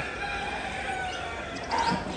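A crowd of caged budgerigars chattering, many overlapping chirps and warbles at once, a little louder near the end.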